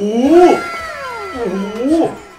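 A man's drawn-out exclamation of 'โอ้โห' ('wow'), his voice sliding up and then down in pitch. Near the end comes a second, shorter rising 'โอ้'.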